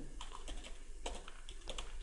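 Faint keystrokes on a computer keyboard: a quick series of clicks as a word is typed.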